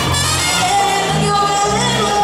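Live plena band playing, with a woman singing over electric bass, keyboards and percussion. One held note rises slightly near the end.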